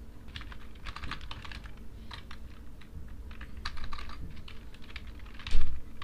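Typing on a computer keyboard: a run of irregular keystrokes, with one much louder knock about five and a half seconds in.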